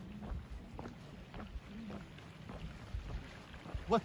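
Footsteps on a wooden boardwalk, a string of faint irregular knocks, over a steady low rumble of wind on the microphone.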